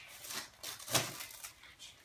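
Gift-wrapping paper being torn and rustled off a box by a small child's hands: a few short rips and crinkles, the loudest about a second in.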